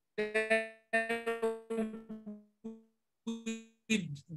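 A quick run of short keyboard-like electronic notes, mostly on one pitch, in three or four small groups, each note dying away fast.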